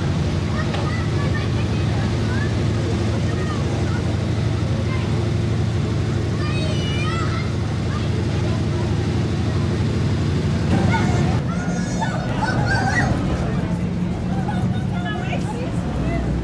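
A vintage American car's engine running slowly with a steady low hum under crowd chatter. The hum changes about eleven seconds in.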